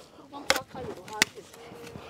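Two sharp chopping strikes, about three-quarters of a second apart: a digging tool biting into earth.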